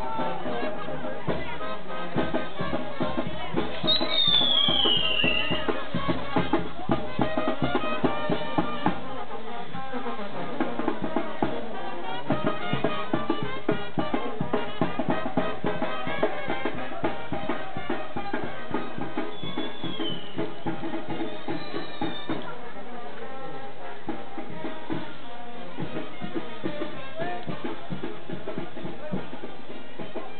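Brass-band music with trumpets and drums, over a dense run of sharp, rapid cracks that thins out about seventeen seconds in. A brief falling whistle sounds about four seconds in.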